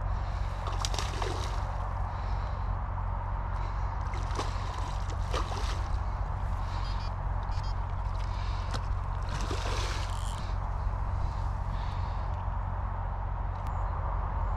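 A hooked carp splashing at the surface close to the bank as it is played toward the landing net, in irregular bursts, the biggest about five seconds in and again around ten seconds in. A steady low rumble runs underneath.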